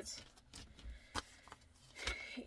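Faint rustling and tapping of items being handled and set down, with one sharp tap just past a second in.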